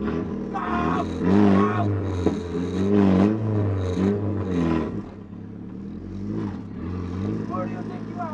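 Nissan Silvia S14's SR20 four-cylinder engine heard from inside the cabin, revving up and down hard as the car is driven. It gets quieter from about five seconds in.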